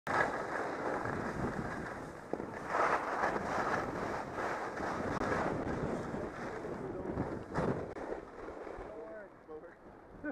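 Rushing noise of skiing downhill: wind buffeting a helmet-mounted camera's microphone and skis sliding and scraping over packed, tracked snow, surging on the turns. The noise stops about a second before the end as the skier comes to a halt, and nearby voices can be heard.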